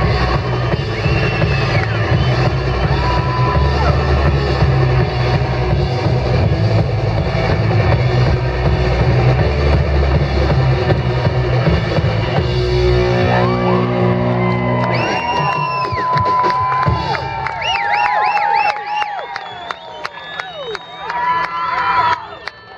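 Garage rock band playing live, with electric bass and drums, until the song ends about thirteen seconds in. The crowd then cheers and whoops.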